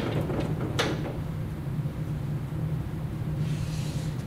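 A sharp tap of a wooden meter stick against a whiteboard about a second in, then a dry-erase marker scratching along the board near the end, over a steady low room hum.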